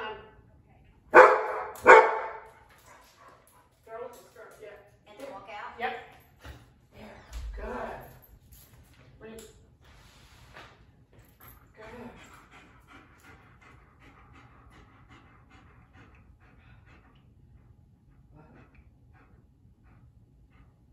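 German Shepherd barking: two loud barks about a second apart near the start, followed by scattered quieter barks and whimpers.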